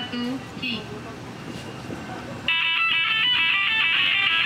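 Brief voices, then about two and a half seconds in a rock band's song comes in suddenly and loud, led by a bright line of quickly changing notes over electric guitars.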